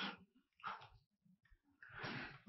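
Near silence, with a man's faint breaths: a soft exhale about two-thirds of a second in and a breath drawn near the end.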